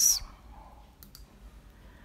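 A pause with two faint, short clicks close together about a second in, over low room noise.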